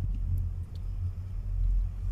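Wind buffeting the phone's microphone on an open chairlift ride: a low, unsteady rumble that swells and dips.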